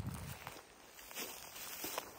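Faint footsteps and rustling through dry grass and brush.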